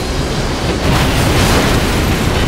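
Dramatized sound effect of an airliner crashing into the ground in a rainstorm: a loud, dense rumble of impact and rushing noise that swells about a second in.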